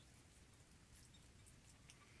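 Near silence: room tone, with a very faint tick near the end.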